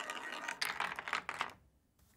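Rapid small clicks and scrapes of a hand tool working a bolt at a clear plastic pipe mount, stopping about one and a half seconds in.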